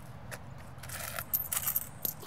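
Loose coins jingling and clinking as change is handled, in a quick cluster of bright clinks during the second half.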